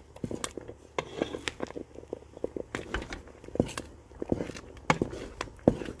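A spoon stirring and mashing thick ogbono soup in a pot, with irregular light knocks and scrapes of the spoon against the pot.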